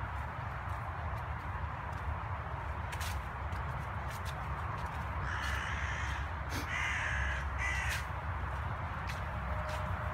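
A bird calls three times in quick succession about halfway through, over steady low rumble on the microphone and scattered clicks of footsteps through dry leaf litter.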